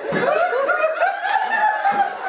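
A crowd of party guests laughing and chuckling, many voices overlapping.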